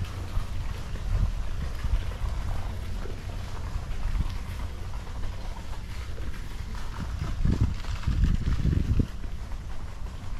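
Low rumble of wind buffeting a handheld action camera's microphone while it is carried outdoors, with a couple of stronger gusts near the end.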